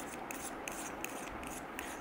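Fingers rubbing and handling the small plastic battery housing of a BOYA BY-M1 Pro lavalier microphone as its battery compartment is closed, with a few faint clicks.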